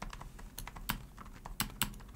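Typing on a Genius GX Gaming membrane keyboard: fairly quiet, irregular keystrokes, with a few sharper ones in the second half.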